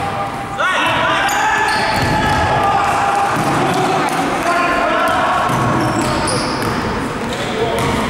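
Live basketball play: the ball bouncing on the court, sneakers squeaking as players run and cut, and players' voices calling out.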